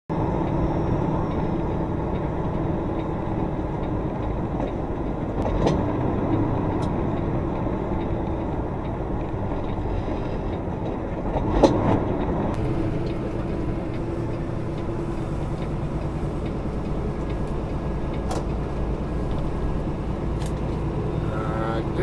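Semi truck's diesel engine and road noise heard inside the cab, a steady low rumble while driving slowly, with a few faint clicks and one louder knock about halfway through.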